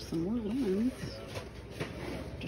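A woman's voice making a short wordless, sing-song hum or murmur that rises and falls several times in the first second, followed by a couple of faint clicks.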